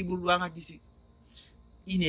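A man's voice trailing off about half a second in, then a faint, steady, high-pitched trill of crickets at night.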